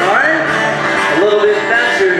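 Acoustic guitar strummed with singing, a lively children's song.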